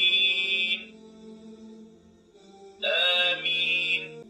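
Recorded Arabic prayer recitation in a chanting voice, playing from the electronic prayer mat's speaker. A long held note ends about a second in, the sound drops low for a couple of seconds, and a new chanted phrase begins near the end.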